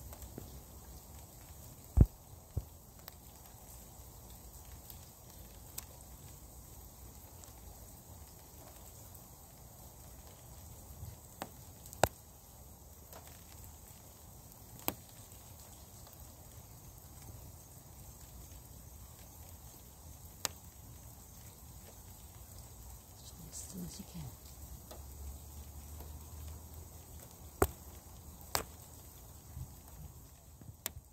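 Quiet outdoor night background with a steady faint hiss. Several sharp clicks and knocks come from the phone being handled as it is held steady, the loudest about two seconds in.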